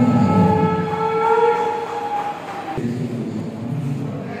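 Several long, steady tones held together at different pitches, stopping abruptly just under three seconds in, followed by a softer, lower sound.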